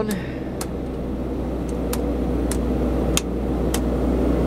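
Kohler 10 kW four-cylinder marine generator running steadily while its control-panel toggle switches are flipped with a series of sharp clicks, switching off the electrical loads so the set is left running unloaded, freewheeling.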